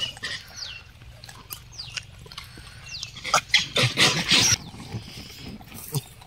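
Gray langurs crowding around a feed sack: rustling, scuffling and clicks, with a loud harsh noisy stretch about three and a half seconds in that lasts about a second, over repeated short high falling chirps.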